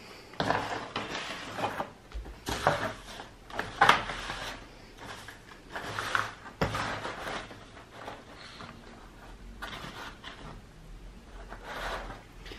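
Hands rummaging through craft supplies: rustling and scraping with a few light knocks, busiest in the first seven seconds and quieter after.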